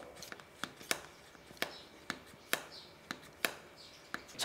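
Easy Fermenter hand vacuum pump being worked on a fermentation lid on a mason jar, drawing the air out of the jar. It gives a series of faint, sharp clicks, about seven in all, at uneven intervals.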